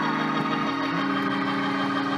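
Organ holding sustained chords, the lower notes shifting once about a second in.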